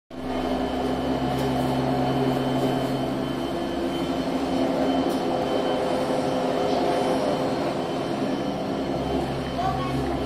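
Ropeway station bullwheel and drive machinery running: a steady mechanical hum with several steady tones. The lowest tone drops out about a third of the way in and comes back near the end.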